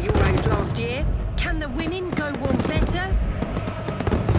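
Fireworks bangs and crackles over the display's soundtrack of music, with a voice in the mix.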